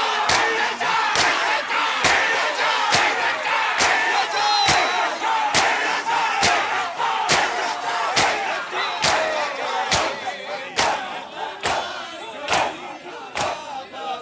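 A crowd of shirtless mourners doing matam, bare hands slapping their chests together in a steady beat of a little over one slap a second, over loud shouting and chanting from many men's voices.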